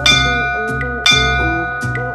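Two bell-like chime strikes about a second apart, each ringing on, over background music with a plucked guitar: a countdown chime ticking off the last seconds of a rest break.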